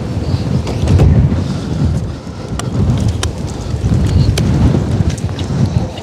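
Strong gusting wind buffeting the microphone: a loud, low rumble that swells and dips in gusts, with a few sharp clicks over it.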